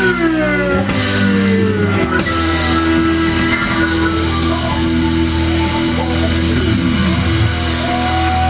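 Live rock band playing an instrumental passage. Guitar notes slide down in pitch over held bass and chord notes, with another downward slide near the end.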